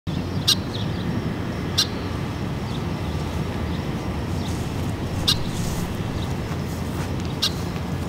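A bird giving four short, sharp, high chirps, spaced one to three and a half seconds apart, over a steady low rumble of background noise.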